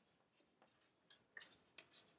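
Near silence with a few faint, short ticks of chalk writing on a blackboard, in the second half.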